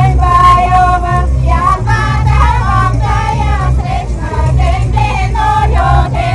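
Women's voices singing a folk melody in high, held and ornamented lines, over a steady low rumble.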